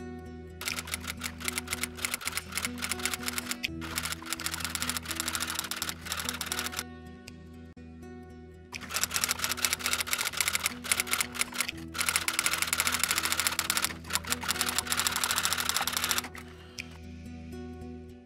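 Typewriter-style key clatter in four bursts of about three seconds each, with short pauses between, as the text types onto the screen. Under it runs low, sustained background music.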